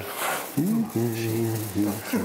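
A man's voice: short unworded sounds, then one tone held on a single low pitch for about a second, with a brief hiss at the very start.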